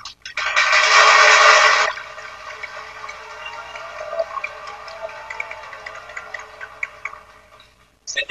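Audience applauding: a loud burst for about a second and a half, then thinning to scattered claps that die away.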